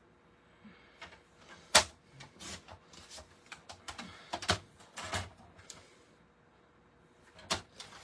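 Clicks and light clatter of a paper trimmer's blade carriage and cardstock pieces being handled and laid down on the trimmer, with one sharp click about two seconds in and a last single click near the end.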